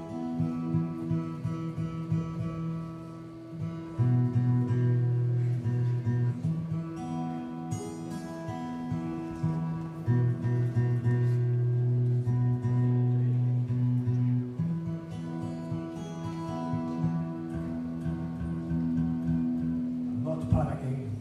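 Amplified acoustic guitar played live through a PA, an instrumental passage of slow chords. Each chord rings for a few seconds, with its low notes held and changing about every three to four seconds.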